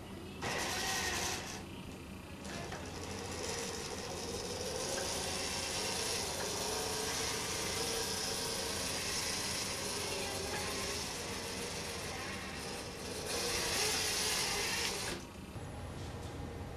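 Homebuilt robot's arm gear motors whirring and grinding steadily as the arms move through a sequence, with a louder stretch near the end before the sound stops suddenly.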